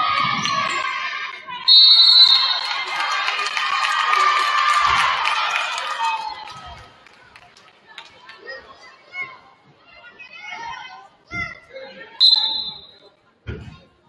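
A referee's whistle blows loudly about two seconds in, stopping play, over the shouting voices of players and spectators in a gym. Then a basketball bounces on the hardwood floor a few times, and a second short whistle sounds near the end.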